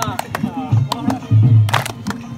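Music for a Saraiki jhumar dance with a deep drum beat, the dancers' hand claps, and men's shouts of encouragement over it.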